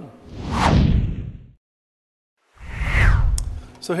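Two whoosh transition sound effects, each sweeping down in pitch, with about a second of dead silence between them.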